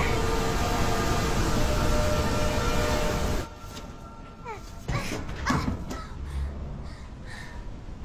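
Loud steady roar of a waterfall that cuts off abruptly about three and a half seconds in, followed by a quieter stretch of knocks and short creaks.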